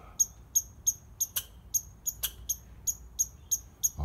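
Tree squirrel calling: a steady run of short, high chirps, about three or four a second, with two sharper clicks partway through.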